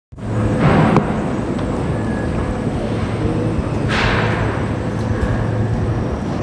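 Loud, steady mechanical rumble with a low hum, swelling briefly near the start and again about four seconds in.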